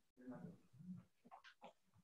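Near silence with a few faint, short voice-like sounds.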